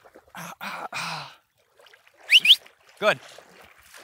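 German Shorthaired Pointer puppy splashing with its front legs in shallow pond water, a few quick splashes in the first second and a half. Two short, loud rising chirps follow just past the middle.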